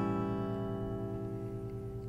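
A strummed open A7 chord on a Martin steel-string acoustic guitar ringing out and slowly fading, with no new strum.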